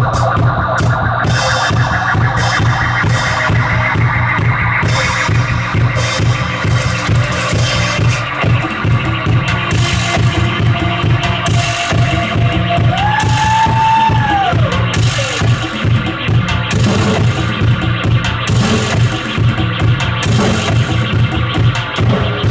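Live synth-punk band playing: drum kit over a dense, pulsing electronic synth and bass drone, with an electric guitar. A tone swoops up and falls back a little past the middle.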